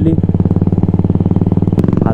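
Royal Enfield Classic 350 Signals' 346 cc single-cylinder engine running at a steady cruise, a low, even beat of firing pulses.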